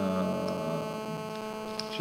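Steady electrical hum on the recording, a stack of even, unchanging tones. A man's voice trails off in a drawn-out hesitation during the first moment.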